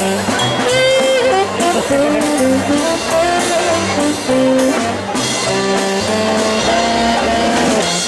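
Mummers string band jam: a section of saxophones playing a tune in several parts over plucked strings and a steady low beat.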